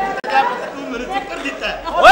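Several voices talking over one another in rapid back-and-forth.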